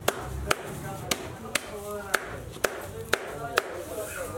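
A wooden stick beating a heap of dry grass in sharp, evenly spaced strikes, about two a second.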